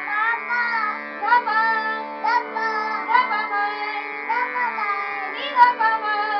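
A small child singing a melody in short phrases over the steady held chords of a harmonium.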